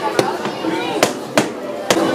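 Background chatter of voices in a large indoor hall, with four sharp clicks spread across two seconds.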